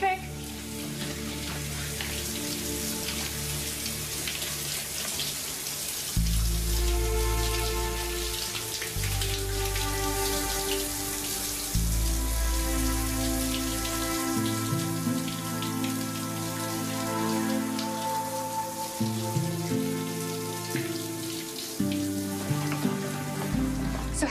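Shower spray running steadily, under a slow music score of sustained chords that change every few seconds, with deep bass notes joining about six seconds in.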